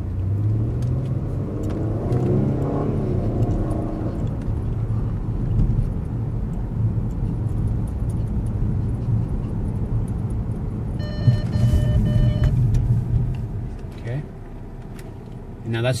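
Engine and road noise inside a car cabin, rising as the car picks up speed. About eleven seconds in, an electronic warning tone sounds steadily for about a second and a half: the vehicle-to-vehicle forward collision warning. A sharp knock comes as it starts, and the car's noise falls away as it brakes.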